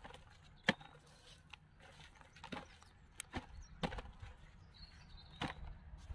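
Lumps of manure and wood charcoal being handled and dropped into a plastic tub: scattered sharp clicks and crackles, about one a second.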